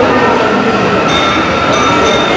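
Steady droning tones with a few short, ringing metallic clinks from about halfway in.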